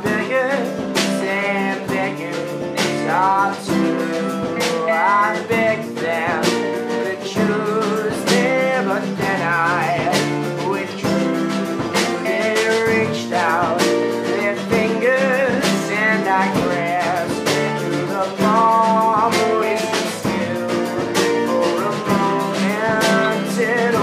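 Instrumental passage played by a small band: mandolin and acoustic guitar strumming, an electric guitar through a Vox amp playing lead lines, and a snare drum and cymbal keeping a steady beat.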